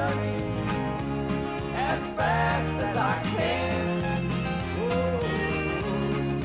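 Live country gospel music: acoustic and electric guitars playing over a steady bass line, with a bending melody line above them.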